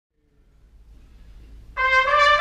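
A swing big band's brass comes in with a sudden held note near the end, after about a second and a half of faint room noise.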